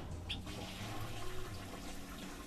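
Water rushing in a nearby toilet room, a steady hiss of water that comes in suddenly.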